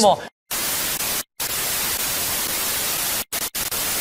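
Television static sound effect: a steady white-noise hiss as loud as the speech around it, broken by short dropouts about a second in and twice near three seconds, accompanying a glitchy colour-bar video transition.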